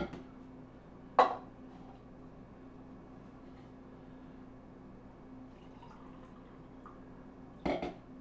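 Sharp knocks from an emptied soup can being tapped and shaken out over a slow cooker: one loud knock about a second in and a quick pair of knocks near the end, over a faint steady hum.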